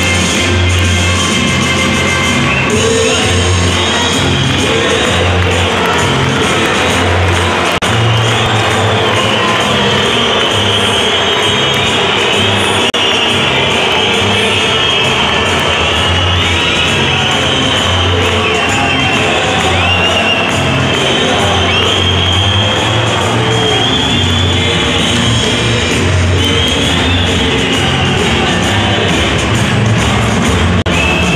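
Loud rock music played over an ice-hockey arena's PA system, with a strong repeating bass line and the crowd cheering under it.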